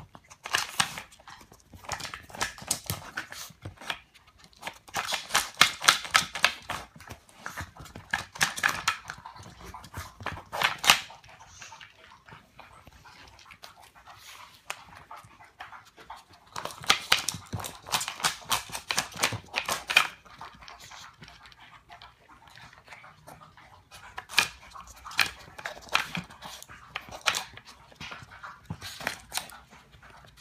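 A Chihuahua eating from a wooden puzzle feeder: bouts of rapid clicking and crunching as it noses and paws at the wooden pieces and chews its food, with quieter pauses between the bouts.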